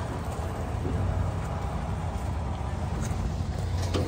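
Steady low rumble of an idling diesel truck engine.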